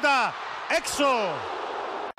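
A football commentator's voice in two falling exclamations over the steady noise of a stadium crowd.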